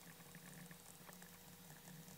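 Very faint, irregular tapping and scratching of a stylus writing on a tablet, over a low steady hum; otherwise near silence.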